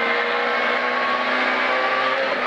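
Peugeot 106 A5 rally car's engine heard from inside the cabin, pulling hard at fairly steady revs between pace-note calls.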